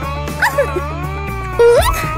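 Cartoon background music with steady tones and bass, over which a baby cartoon character gives two short vocal cries that slide in pitch, the second, about one and a half seconds in, louder and rising steeply.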